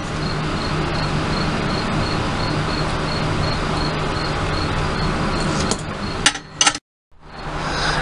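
A steady buzzing hum with a faint regular ticking in it. A few sharp clicks come near the end, then the sound cuts out for a moment.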